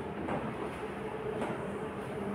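Chalk scraping on a blackboard in a few short strokes as a line and letters are drawn, over a steady low hum.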